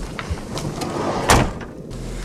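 Minivan door slammed shut a little over a second in, after scuffing and rustling as someone climbs into the seat.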